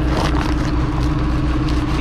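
Diesel engine of a loader running steadily, with a brief rustle and scrape of woven big-bag fabric near the start as the bag's knotted spout is worked loose by hand.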